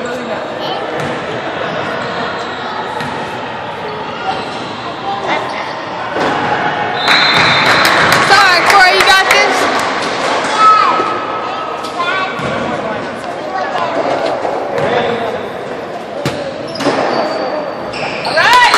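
A basketball bouncing on a hardwood gym floor amid spectators' chatter, echoing in a large gymnasium.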